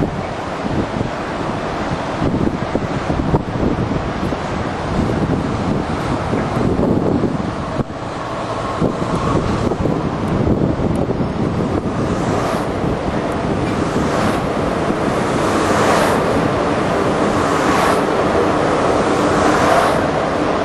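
Steady rushing wind on the microphone over the running rumble of a Walt Disney World monorail train moving along its beamway, growing a little louder in the second half.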